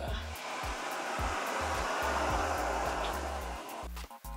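Fold-down top bunk bed being lowered on its wall mechanism: a steady rushing hiss that swells over about two seconds and fades away near the end, with background music underneath.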